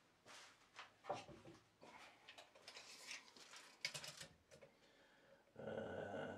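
Faint handling noise of a tape measure being pulled out and laid against cut wood boards: soft rustles and a few light clicks. A brief voice-like hum comes in near the end.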